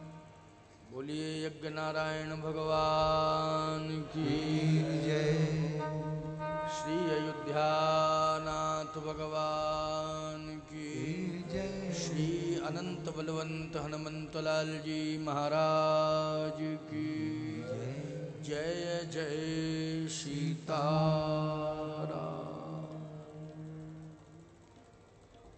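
Devotional chanting: a voice sings a verse in long, held, sliding notes over a steady drone, fading out near the end.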